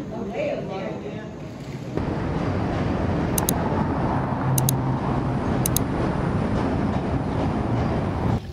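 Steady city traffic noise that starts abruptly about two seconds in, after a quieter stretch of people's voices.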